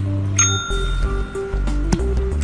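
A green dome desk call bell, struck by a cat, dings once about half a second in, its tone ringing on and fading, over background music.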